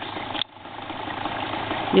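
Small dirt bike engine running. It dips sharply about half a second in, then grows steadily louder.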